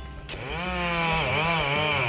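A sharp knock, then a petrol chainsaw comes in about a third of a second in and runs while cutting into a log, its pitch dipping and rising as the chain bites.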